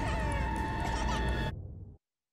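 Infant crying in wavering wails over sustained dramatic music, both fading out about a second and a half in to silence.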